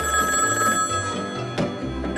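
Telephone ringing over background music. The ring breaks off about three-quarters of the way through.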